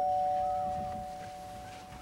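Two-note doorbell chime ringing on after a ding-dong, a higher and a lower tone held together and slowly fading out.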